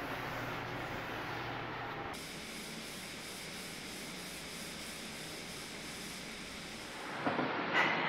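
Damp paper towel wiped across a sanded bare-wood dresser top, a soft, steady rubbing hiss that turns flatter and steadier about two seconds in.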